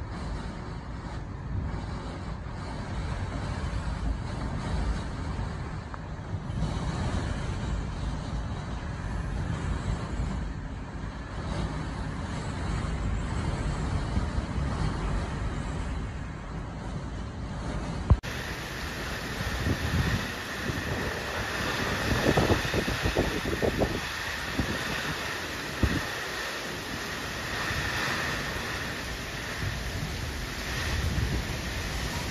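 Typhoon wind blowing hard in gusts with heavy rain, buffeting the microphone. About two-thirds of the way through, one storm recording cuts abruptly to another, with a sharp knock at the cut and stronger, uneven gusts after.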